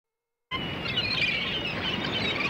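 Birds chirping and twittering over a steady hiss-like bed. It starts abruptly about half a second in.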